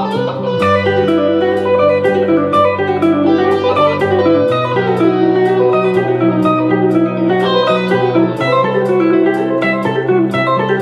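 Ibanez electric guitar playing fast two-notes-per-string arpeggio runs on the G, B and E strings as a shred background texture, over held low chords that change about half a second in and again near the middle.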